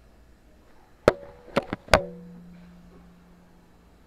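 A camera being handled and set down on a wooden table: four sharp knocks and clatters within about a second, starting about a second in. The last and loudest knock is followed by a low hum that fades away.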